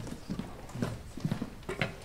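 Scattered footsteps and knocks on a wooden stage floor, with chairs and music stands being bumped as string players move and reposition; a few sharper knocks in the second half.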